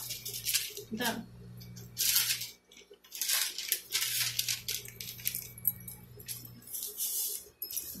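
Paper pattern sheets rustling and sliding as they are handled, in a series of short bursts over a faint steady low hum.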